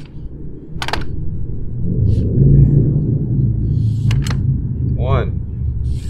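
Folding aluminium frame of a portable tennis ball cart being pulled open, with a few sharp clicks from its joints, about a second in and twice near four seconds. A low rumble swells under it and is loudest two to three seconds in.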